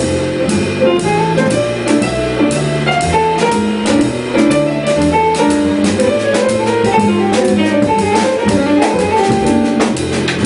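Live jazz trio of piano, upright double bass and drum kit playing an instrumental passage with no vocal. A melodic line moves over changing bass notes, with regular cymbal strokes on the drum kit.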